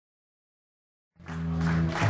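Silence, then a little over a second in, live rock band music cuts in and builds: sustained low chords with drum and cymbal hits.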